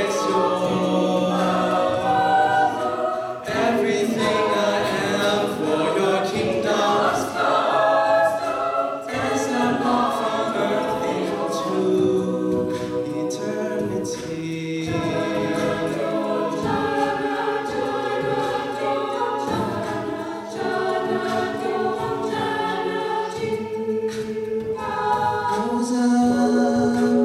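Mixed-voice a cappella choir singing a worship song in sustained chords, with a male soloist on a microphone over the group's harmonies.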